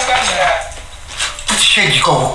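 Dishes and cutlery clinking and clattering as things on a cluttered table are rummaged through, with a few sharp knocks in the second half.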